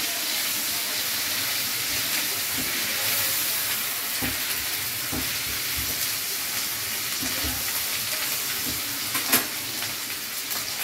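Sliced onions sizzling steadily in hot oil in a wok, stirred and scraped with a spatula. A single sharp knock comes near the end.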